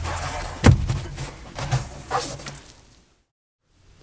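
Handling of an xTool laser enclosure as it is fitted over the laser engraver: a thud about two-thirds of a second in, then softer knocks and rustling that fade away by about three seconds in.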